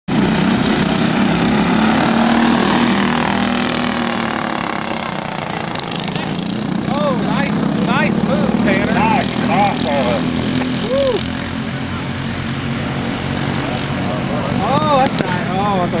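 Racing kart engines running at speed, a steady buzzing drone that is loudest in the first few seconds as the karts pass close. Over it, a voice gives a string of short shouted calls in the middle of the clip and again near the end.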